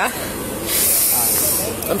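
A person's breath blown out close to the microphone, heard as a sharp hiss lasting about a second, starting a little under a second in.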